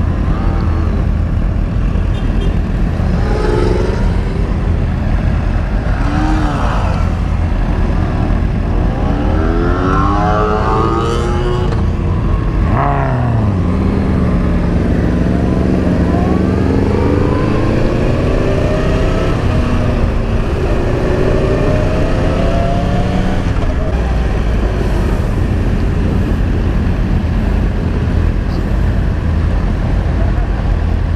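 Sport motorcycle engine accelerating: its pitch climbs several times in succession, drops sharply about thirteen seconds in, then pulls more steadily at a lower pitch. A constant wind rumble on the riding microphone runs underneath.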